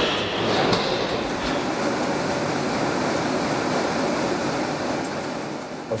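Steady factory machinery noise, an even, unbroken din with no clear rhythm, with a few light clicks in the first second.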